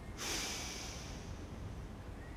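A person exhaling cigarette smoke: one long breath out through the mouth that starts a moment in and fades away over about a second and a half.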